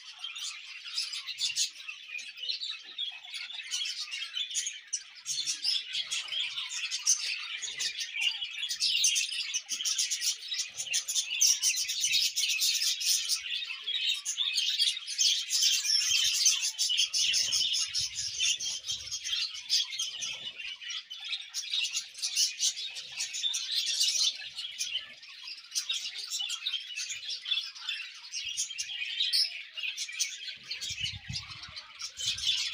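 A dense chorus of small birds chirping, many short calls overlapping without a break.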